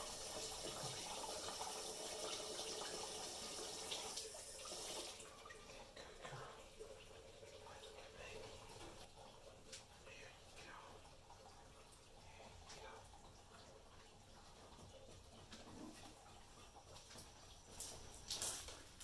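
Water running and splashing in a concrete laundry sink as a dog is bathed, stopping about five seconds in. After that come faint rustles and small knocks from towelling her dry.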